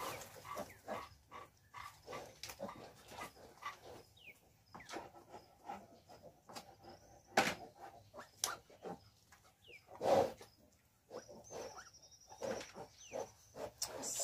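Pigs grunting in short, scattered calls from a handled newborn piglet and the sow in the pen. A few louder grunts come around the middle.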